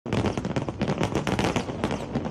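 Aerial fireworks bursting in a fast, irregular run of bangs and crackles.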